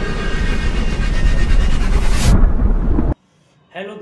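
Loud intro sound effect of deep, rumbling noise with a hiss on top, ending in a sharp rising sweep a little after two seconds and cutting off suddenly about three seconds in.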